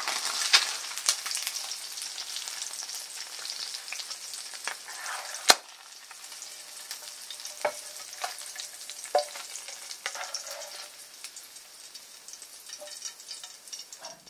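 Hot fat sizzling in a frying pan of fried eggs with bacon and onion, loudest in the first half and thinning out later. Sharp knocks and scrapes of a spatula against the pan as the eggs are lifted out; the loudest knock comes about five and a half seconds in.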